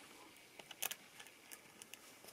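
Faint, light metallic clicks of a steel washer being slipped by hand onto a threaded steel rod. There are several small ticks, and the clearest comes a little under a second in.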